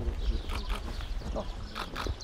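Wind rumbling unevenly on the microphone, with faint voices in the background.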